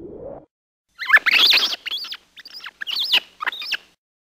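Rat squeaking: a quick run of high, chirping squeaks in four or five bursts that bend up and down in pitch, starting about a second in. Just before it, a short rising whoosh fades out.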